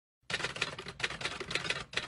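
Typewriter sound effect: a rapid run of key clacks starting about a third of a second in, matching on-screen text typing out letter by letter.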